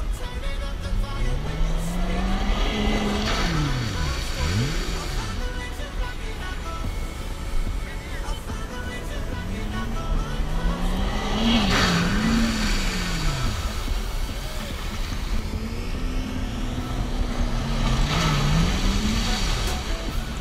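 Gibbs Quadski amphibious quad bikes running hard, engines revving up and sweeping down in pitch as they speed past one after another, several times.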